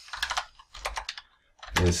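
Typing on a computer keyboard: two quick runs of keystrokes as a line of script code is entered.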